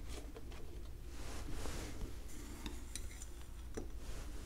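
Faint clinks and scrapes of a metal spatula against a small glass dish while scooping a white powdered chemical, with a few sharp ticks in the second half.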